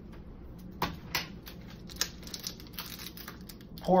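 Light, irregular clicks and taps of hands and utensils working at a small saucepan, over a steady low hum.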